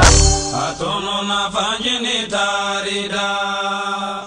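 A man chanting over music, holding long steady notes that waver in a few turns. A heavy bass fades out within the first second.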